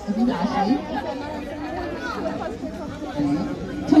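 Crowd chatter: several people talking at once, with no single voice standing out.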